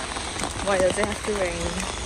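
Steady rain pattering on an umbrella held overhead, with a woman's voice briefly heard in the middle.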